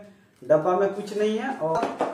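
White cardboard inner pieces of a phone box being handled, with a single sharp knock near the end as the pieces bump together, while a man talks.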